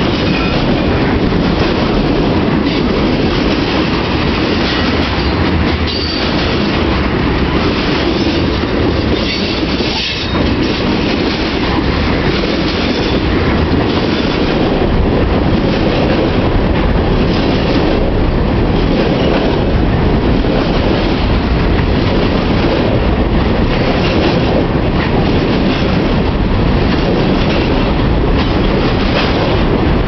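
Freight cars (boxcars, tank cars and covered hoppers) rolling past close by: a steady, loud rumble of steel wheels on rail with a regular clickety-clack from the rail joints and trucks, and now and then a brief high wheel squeal.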